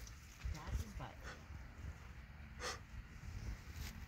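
Faint low rumble of a handheld phone being moved, with a man's short 'uh' about a second in and a brief hiss-like noise a little past the middle.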